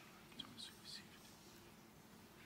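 Near silence in a quiet chapel, with faint whispered speech briefly near the middle.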